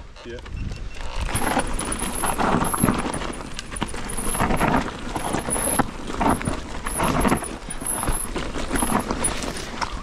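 Mountain bike riding down a dirt forest trail, heard from a rider-mounted camera: tyres running over loose dirt with constant rattling and knocking from the bike, and wind rumbling on the microphone.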